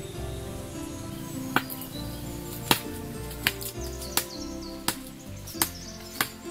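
Machete chopping into a sapling's trunk: six sharp strikes, starting about a second and a half in and coming roughly every 0.7 seconds, over background music.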